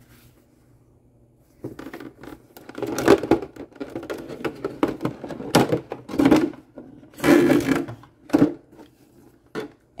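Hands handling a flat iron's packaging: the molded plastic insert tray and fabric case knock, scrape and rustle in irregular bursts, starting after a quiet second or two.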